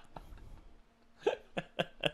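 A man laughing hard in a run of short, sharp bursts, about four a second, starting after a quieter first second or so.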